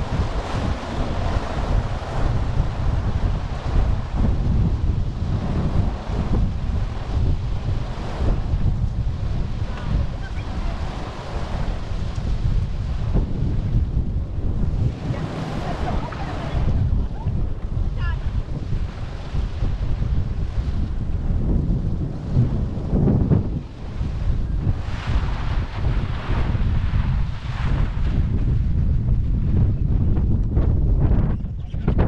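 Strong wind buffeting the microphone of a camera mounted on an open vehicle: a dense, deep rumble that swells and dips in gusts.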